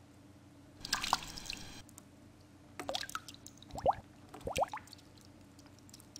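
Water dripping: a few separate drops plopping, each a short sound with a quick rising pitch, about four in all.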